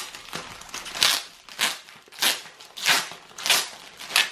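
Shiny foil-plastic packaging of a trading-card starter pack crinkling as hands handle it and pull it open, in about five short crackly rustles.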